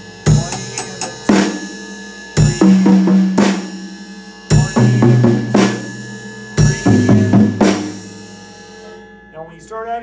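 Drum kit playing a slow groove: a bass drum stroke about every two seconds, snare backbeats between them, and sixteenth notes moving between hi-hat and toms, with quarter notes on the ride cymbal. The playing stops near the end and the drums and cymbals ring away.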